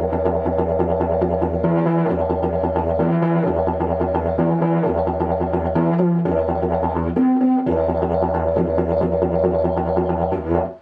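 Carbon-and-kevlar double-slide didgeridoo played with a steady low drone. About every second and a half the drone gives way to a short higher note. The last of these, a little after seven seconds, is higher than the others.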